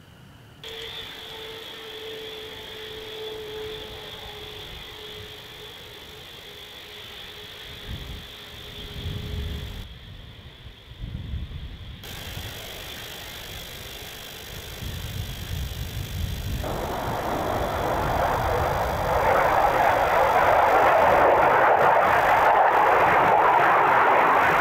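F-15 jet engines running with a steady high whine and a lower tone that slides slightly down. After an abrupt break about ten seconds in, a broad jet roar builds from about two-thirds of the way through and becomes loud.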